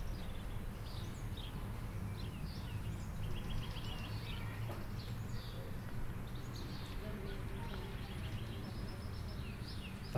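Songbirds chirping and calling in a tree, with a quick trill about three seconds in, over a steady low rumble of distant street traffic.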